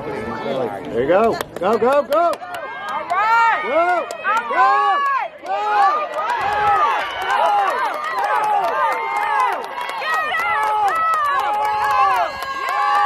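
Many young voices shouting and calling out together, overlapping in rising-and-falling yells, with sharp clicks scattered through.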